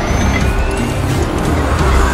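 Film soundtrack mix: score music over the running motors of cyborg Motorball racers' wheel units, with a rising whine.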